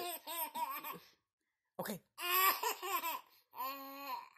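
Nine-month-old baby boy laughing: a run of short repeated laugh pulses, a break about a second in, then a longer laugh and another starting near the end.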